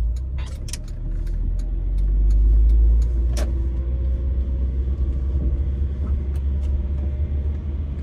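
Car engine and road rumble heard from inside the cabin as the car pulls through a left turn and drives on, the low rumble swelling about two seconds in and easing off after three. A sharp click a little over three seconds in.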